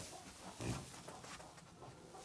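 A pig giving a single short, low, soft grunt about two-thirds of a second in.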